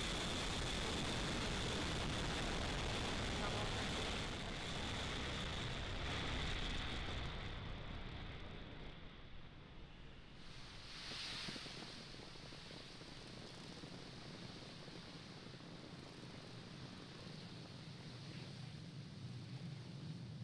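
Falcon 9 first stage's nine Merlin 1D engines during liftoff and early ascent: a loud, steady rocket rumble that fades over the first half as the rocket climbs away, leaving a softer hiss with a brief swell just after the middle.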